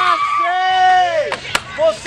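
Loud voices calling out, with two sharp clacks of skateboards striking the concrete about one and a half seconds in.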